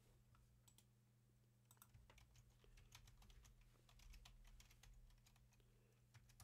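Faint computer keyboard typing: a run of quick key clicks starting about two seconds in and going on for a few seconds.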